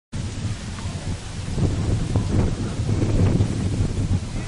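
Wind buffeting the camera's microphone: a loud, continuous low rumble that swells and dips.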